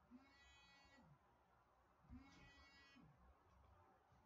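Near silence, with two faint voice-like sounds about a second long: one at the start and one about two seconds in.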